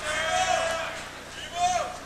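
An audience member whooping for a graduate: one long held cheer, then a second, shorter whoop near the end.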